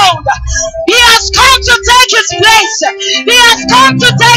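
A woman singing a gospel worship song into a microphone, loud through the PA system.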